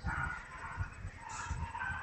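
Dry-erase marker writing on a whiteboard: faint scratching with a few short, faint squeaks.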